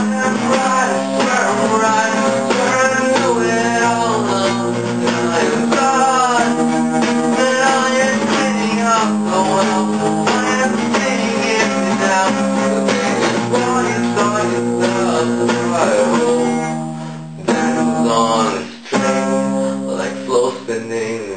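Acoustic guitar strummed steadily, playing the song's chords, with a brief dip and break in the strumming near the end.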